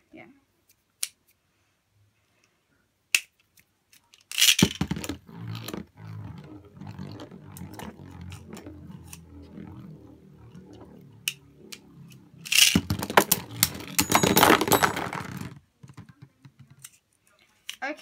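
Beyblade spinning tops launched into a plastic stadium about four seconds in, then whirring steadily as they spin on the plastic floor. About three seconds of loud clattering follows near the end as the tops clash against each other and the stadium walls, then it stops. A couple of sharp clicks come before the launch.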